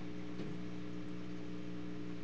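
Steady electrical mains hum: a low buzz made of several evenly spaced tones, holding an even level with no break.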